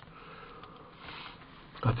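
A man's faint breathing through the microphone in a pause, swelling slightly about a second in, then he starts speaking near the end.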